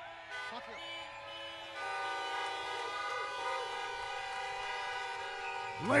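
Many car horns honking at once: a chorus of overlapping steady tones at different pitches that builds up over the first two seconds and then holds. It is a parked-car audience answering the call to make noise, honking in place of cheering.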